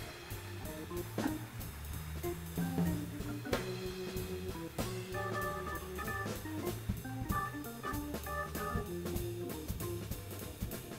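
Jazz organ trio playing: Hammond-style organ chords and a bass line over drum kit and cymbals.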